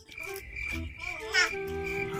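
A steady, high-pitched trill like crickets chirping, with a few lower pitched notes and a short warble about one and a half seconds in.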